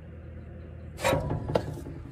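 Rustling and scraping of hands handling wiring and grit inside a street light fixture, a short cluster of bursts about a second in, over steady low room noise.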